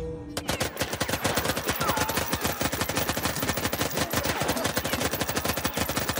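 Rapid automatic gunfire from two submachine guns fired together: a continuous stream of shots at about ten a second, starting abruptly.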